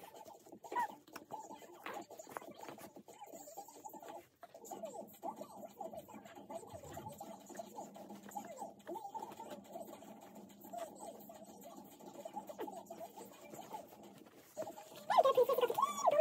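Quiet handling of a baby's disposable nappy during a change: soft rustling and small clicks, with faint small squeaky sounds. A voice comes in briefly near the end.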